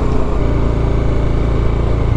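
Motorcycle engine running while the bike is ridden at low speed, heard from the rider's seat, its note shifting about half a second in.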